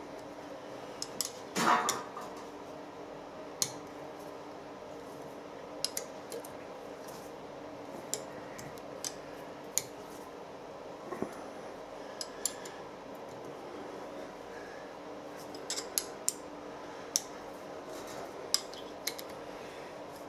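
Steel Allen key clicking against the socket-head cap screws of a boring head's R8 adapter as they are tightened: a dozen or so sharp, light metallic clicks spread out at irregular intervals, with one louder, longer metal clatter about two seconds in.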